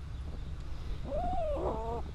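A dog whines once, a short high whine that rises and then falls, starting about a second in.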